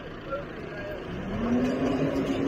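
Tractor engine driving a John Deere 530 round baler. The engine is running steadily and about a second in it speeds up, rising in pitch and then holding, as the baler is set going again after tying a bale.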